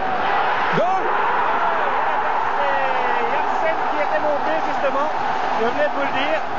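Football stadium crowd cheering and shouting at a goal, swelling as the ball goes in, with single voices and a few shrill calls standing out.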